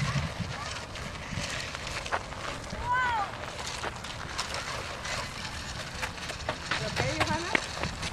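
Young children's voices: a short high-pitched call that rises and falls about three seconds in, and more brief vocal sounds near the end, over a steady rushing outdoor noise.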